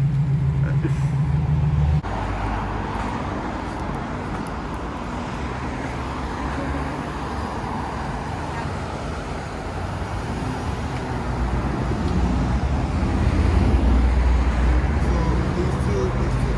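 A steady low hum for about the first two seconds, cut off abruptly. Then traffic noise from cars passing on a busy city street, with a low rumble growing louder near the end.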